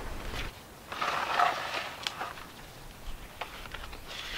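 Potting soil being scooped and plastic nursery pots being filled and set down in a plastic tray: a scratchy rustle of soil about a second in, with a few light knocks of the pots.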